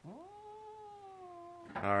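A domestic cat's single long meow: it swoops up in pitch at the start, then holds and slowly sinks for about a second and a half.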